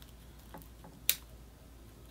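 A single sharp snip about a second in as a branch is cut from a crown of thorns (Euphorbia milii) bonsai, with a couple of faint ticks before it.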